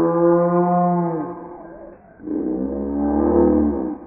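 Imagined Hypacrosaurus call made from Paradise shelduck and ruddy shelduck calls: two long, low calls, the first fading out just over a second in, the second starting a little after two seconds in with a deep rumble beneath it.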